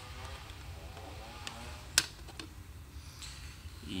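One sharp plastic click about halfway through as the loose top half of an opened compact cassette shell is handled and set down, over a steady low hum.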